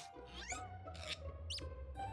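Cartoon sound effects over soft background music: a quick rising swoop about half a second in, then a short high squeak about a second and a half in, as a character mimes sealing a promise.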